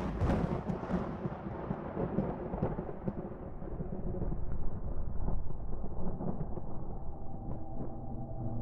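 Deep, rumbling cinematic intro sound effect, thunder-like, its high hiss thinning away over several seconds while steady low tones swell in near the end.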